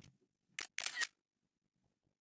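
iOS screenshot shutter sound: the device's synthetic camera-shutter click, heard as two quick sharp clicks about half a second in.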